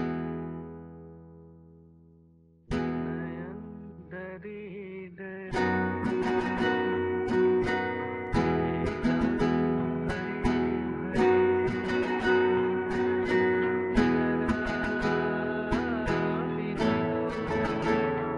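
Acoustic guitar chords strummed: one chord rings out and fades, another is struck about two and a half seconds in, then a steady rhythmic strumming pattern runs from about five seconds in.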